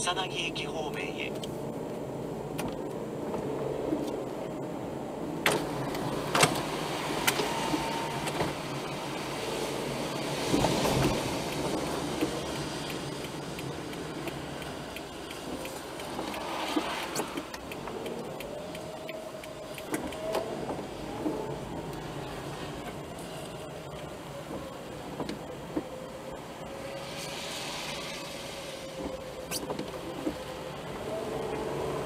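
Car driving on a wet road, heard from a dashcam inside the car: steady road and tyre noise, with a few sharp clicks near the start and swells of louder noise a few times.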